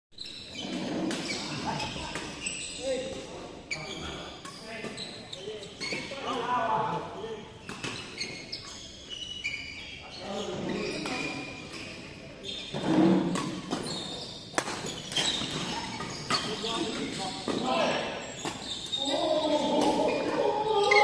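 Badminton racket strikes on a shuttlecock during doubles play: short sharp hits come irregularly throughout, echoing in a large hall, with voices of people talking in the background.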